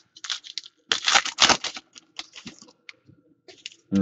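Foil trading-card pack wrapper crinkling as hands work it open, with a dense burst of crackling about a second in, then scattered lighter crinkles and clicks.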